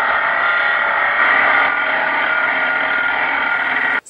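Angle grinder running with a steady high whine as its disc grinds cast iron for a spark test.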